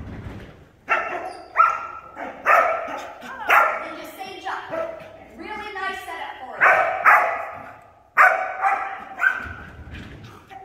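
A dog barking repeatedly: about ten sharp, high-pitched barks, several in quick pairs, with a short lull in the middle. The barks echo in a large indoor hall.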